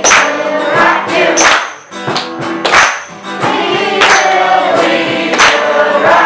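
Live acoustic song: a boy singing into a microphone over strummed acoustic guitar, with a tambourine struck in time with the beat.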